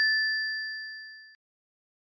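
A single bright bell-like ding, a notification-style sound effect for a subscribe-bell icon. It rings and fades, then cuts off suddenly about a second and a half in.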